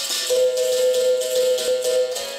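A berimbau, capoeira's steel-strung musical bow with a gourd resonator, struck with a stick while the caxixi basket rattle in the same hand shakes with each stroke. A ringing note is held for most of the two seconds.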